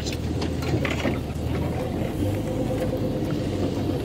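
Engine of an open safari game-drive vehicle running steadily as it drives along a dirt track.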